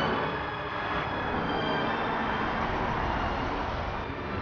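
Steady street traffic noise: the continuous sound of vehicles on a city street.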